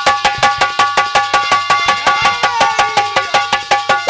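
Instrumental break in live Hindi folk music: a hand drum played in a fast, even rhythm of about five or six strokes a second, under steady held melody notes.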